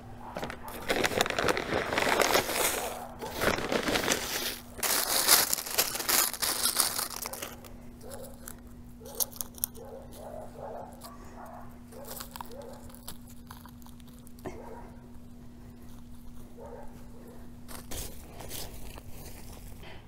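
Crunching and crinkling as bulbs are planted by hand: a plastic bag rustles and dry mulch and soil are worked and scraped. It is loudest in the first seven seconds, then turns to quieter, scattered scuffs, over a faint steady hum.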